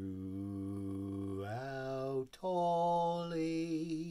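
A man singing a hymn unaccompanied, in long held notes. About one and a half seconds in, the note steps up to a higher one. After a brief break, another long note is held and falls away near the end.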